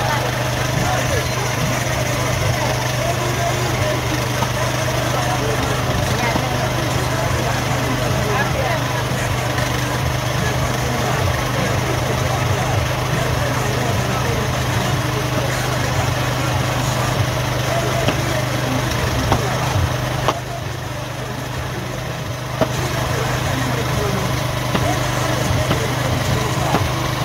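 A small engine runs steadily under the chatter of market voices, with short knocks of a butcher's knife cutting meat on a wooden block.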